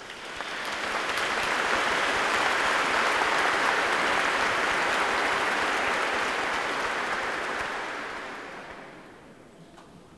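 Congregation applauding. The applause swells up over the first second, holds steady, and dies away over the last two seconds.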